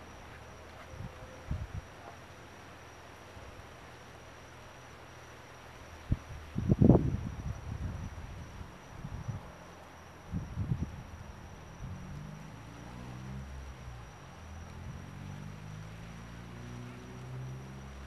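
Night-time outdoor ambience: a steady high insect trill over faint hiss, with a few low thumps, the loudest about seven seconds in. Through the second half a low drone wavers slowly in pitch.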